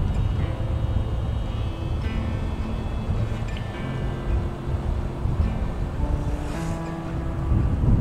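Steady wind rush over the microphone of a motorcycle rolling downhill, with soft background music of held notes that change pitch every second or two.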